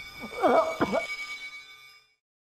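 A man's strained, wavering cry with the pitch bending up and down, loudest about half a second in and fading by the end, over a sustained background music drone.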